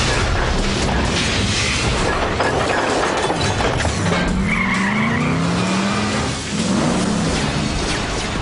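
Action-cartoon soundtrack: a dense, steady mix of sci-fi battle sound effects, blasts and flying whooshes, over background music. A few short rising tones come through about halfway.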